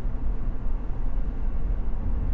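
Honda S660's engine and road noise heard inside the cabin while driving at steady speed: an even low rumble with no change in pitch.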